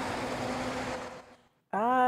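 Road traffic: a flatbed tow truck driving past, a steady rush with a low hum that fades out about a second in, followed by a moment of silence.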